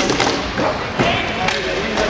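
Inline hockey play: several sharp clacks of sticks and puck on the rink, near the start, about a second in and about a second and a half in, over players' voices calling out.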